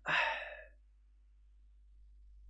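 A man sighing: one breathy exhale in the first second that fades away.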